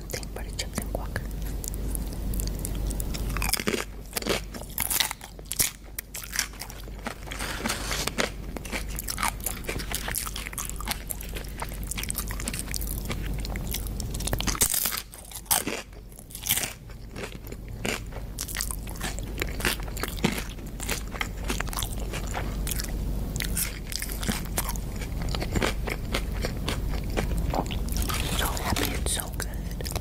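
Close-miked eating of crunchy food: bites and chewing, with many sharp crunches throughout.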